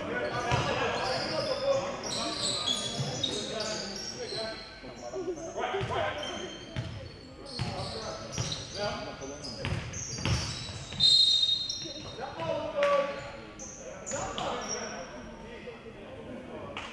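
Basketball bouncing repeatedly on a hardwood gym floor as it is dribbled, with sneakers squeaking in short high chirps, all echoing in a large hall.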